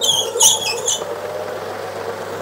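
Electric centrifugal hydro-extractor spinning freshly dyed silk yarn to drive the water out, its motor running with a steady hum. Brief high-pitched squeaks sound in the first second.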